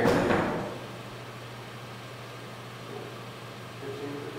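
Quiet room tone: a steady low hum with faint hiss, after a louder sound fades out in the first half-second.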